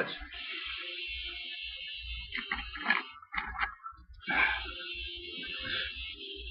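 A man drinking from a can: a series of gulps and swallows with short soft knocks as the can is handled, over a steady hiss.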